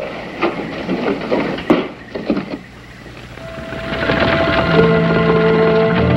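Footsteps knocking on wooden porch boards for the first couple of seconds, then the film score fading in with held notes at several pitches, growing louder toward the end.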